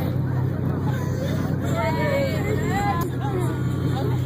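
Tour boat's engine droning steadily, with people's chatter. Between about one and a half and three seconds in come high-pitched squeaky calls that rise and fall, imitating dolphins.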